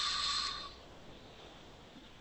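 A burst of hiss that stops about half a second in, then faint room tone.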